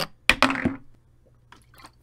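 Drinking sounds from a person taking a swig of aloe vera drink from a plastic bottle: a sharp mouth click and a short gulp about a third of a second in, then a couple of faint soft ticks.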